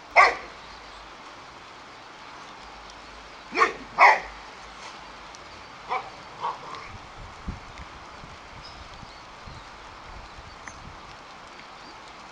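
Boxer dog barking: a sharp, loud bark at the start, then a few more short barks a few seconds later, fading to softer ones.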